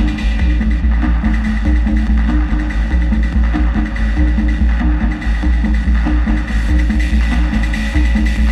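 Live electronic music from a modular synthesizer and keyboard, played loudly through a PA: a quick repeating sequence of low synth notes over pulsing sub-bass, with a steady high tone above.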